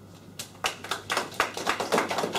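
Audience applauding: many hands clapping, starting about half a second in.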